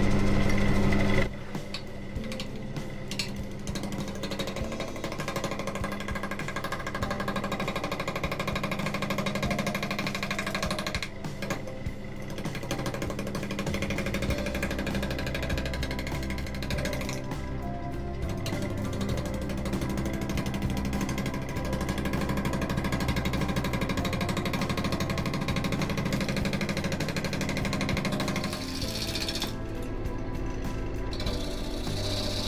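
Wood lathe spinning a rough, unbalanced silver birch bowl blank at about six to seven hundred rpm, with a bowl gouge roughing it. The lathe is loud for about the first second, then the level drops suddenly and instrumental background music plays over the turning.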